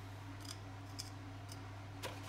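Metal spoon lightly clicking and scraping as soft margarine is spooned into a plastic mixing bowl on a kitchen scale: a few faint clicks about half a second apart, over a steady low hum.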